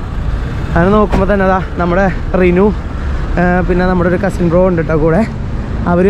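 A person talking in short phrases over the steady low noise of street traffic, cars and buses passing nearby.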